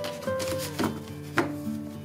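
Gentle acoustic guitar music, with paper and cardstock sheets handled and two sharp taps as the stack is squared, the second louder, near the middle.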